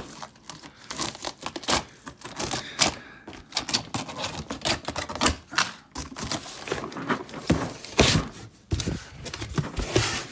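Packing tape on a cardboard box being slit with a key and torn open, a dense irregular run of scraping, crackling and clicking, then the cardboard flaps pulled back with a few sharper thumps near the end.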